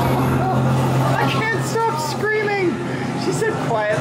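Unintelligible voices, drawn-out and gliding in pitch, over a steady low droning hum.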